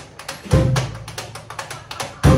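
Small hokum jazz band playing live in a stop-time passage: one full band chord with a strong bass about half a second in, with quick, sharp percussion taps filling the gaps.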